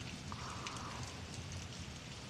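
Quiet, steady background hiss of a room-tone or ambience bed, with a faint, brief tone about a third of a second in.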